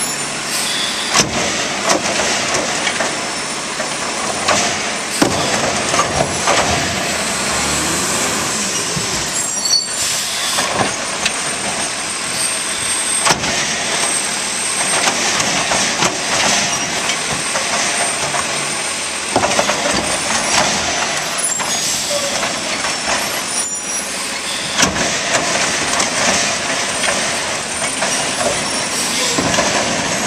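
Automizer automated side-loader garbage truck at work: its engine runs and revs while the hydraulic arm lifts, empties and sets down wheeled trash carts. Repeated bangs and clunks of the carts run through the engine noise.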